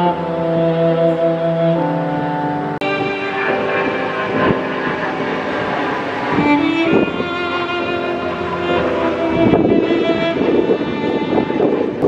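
Slow instrumental string music, violin and cello holding long notes, with an abrupt cut to a new passage about three seconds in. A rushing noise rises under it over the last couple of seconds.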